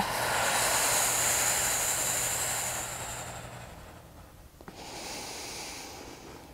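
A woman's long, audible exhale that fades away over about three and a half seconds, followed near the end by a shorter, softer breath in. This is paced yoga breathing timed to slowly lowering and lifting a straight leg during a core exercise.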